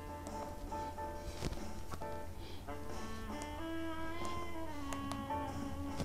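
Music leaking out of Audio-Technica ATH-M20x closed-back headphones played at maximum volume, heard faintly and thinly as a shifting melody.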